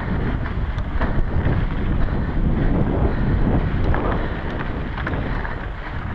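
Wind buffeting a GoPro's microphone as a mountain bike rides fast down dry dirt singletrack, with tyre rumble on the trail and small scattered clicks and rattles from the bike over rough ground.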